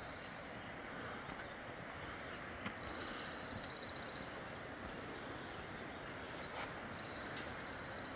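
A songbird's rapid, even trill on one high pitch, each trill about a second and a half long, sung three times about four seconds apart, over the steady rush of a full-flowing mountain stream.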